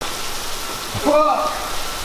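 Heavy rain pouring down steadily, an even hiss.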